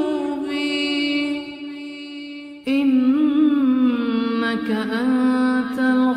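A man's voice chanting an Arabic supplication (dua) in a drawn-out melodic style. A long held note fades about two seconds in, then a new wavering melodic phrase starts abruptly and louder just before three seconds.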